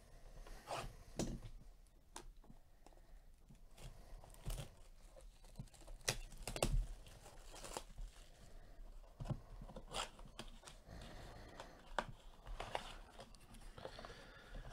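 A trading-card blaster box being torn open by hand: irregular crinkling and tearing of its wrap and cardboard, in short scattered crackles with small pauses between.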